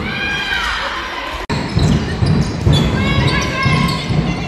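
Indoor handball game: the ball bouncing and thudding on the sports-hall floor amid players' footfalls, with high shouts from the players, all echoing in the large hall.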